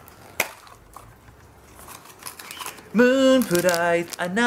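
Plastic blind-box packaging being opened and handled, with soft crinkles and one sharp click about half a second in. From about three seconds in a man's voice sings loud held notes that step down in pitch.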